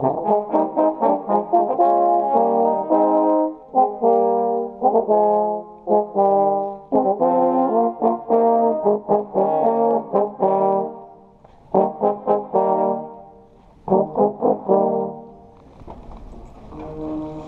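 Trombone played right at the microphone inside a brass section, sounding full chords: a quick run of short, detached notes, then longer held chords, with a few brief breaks, stopping shortly before the end.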